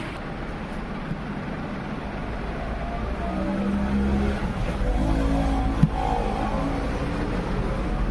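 Steady background rumble like passing road traffic, growing louder about three seconds in, with a low engine-like hum.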